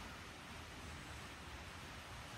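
Faint, steady background hiss with no distinct events: workshop room tone.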